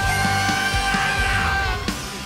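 Live rock band playing loud: electric guitars, bass and drum hits under one long held note. The held note and the band cut off just before the end, dropping into a quieter passage.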